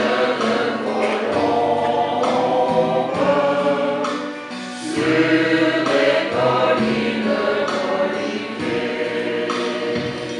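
Choir, mostly women's voices, singing in parts over a synthesizer accompaniment that holds steady low notes, changing chord every second or two.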